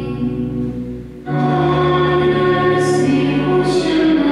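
Church pipe organ accompanying a woman singing a hymn, with sustained organ chords under the voice. About a second in, the sound dips briefly before the next phrase comes in loudly.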